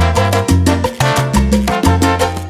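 Salsa band recording playing instrumentally: a prominent bass line of held low notes under steady, evenly spaced percussion strikes and pitched band instruments, with no singing.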